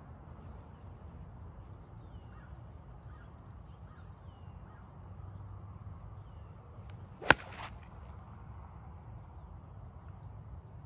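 A golf iron strikes the ball once, a single sharp crack a little past seven seconds in.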